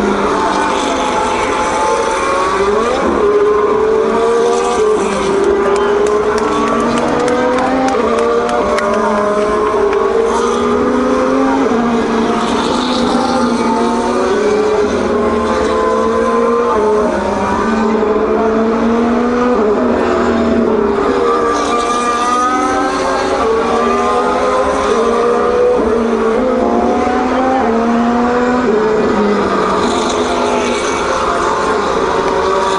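A pack of Formula 1 cars' turbocharged V6 engines running at reduced pace behind the safety car on a wet track, many engine notes overlapping and sliding up and down in pitch as the cars pass.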